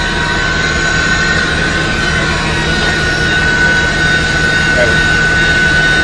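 Heavy engine-driven machinery running steadily and loudly, a low hum under a constant high whine.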